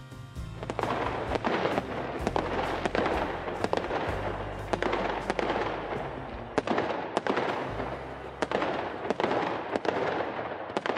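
Fireworks display: a steady run of sharp bangs from bursting shells, a couple each second, over continuous crackling.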